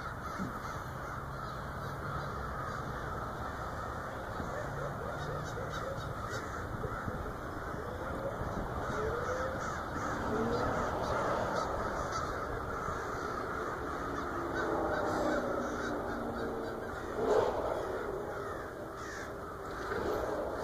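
A large flock of crows cawing as they fly over, many calls overlapping into a continuous chorus, with one louder call near the end.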